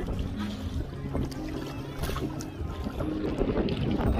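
Wind buffeting the microphone in a kayak on a gusty, choppy lake, a steady low rumble, with faint background music holding steady notes underneath.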